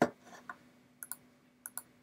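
Computer mouse clicking: one sharper click at the start, then a few soft clicks, two of them in quick pairs about one and one and a half seconds in.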